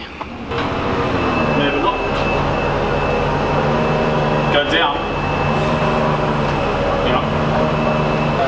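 Forklift engine running at a steady idle, a constant low drone with a thin high tone over it, starting about half a second in.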